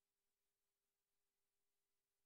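Near silence: the microphone is muted, so the tape gun is not heard.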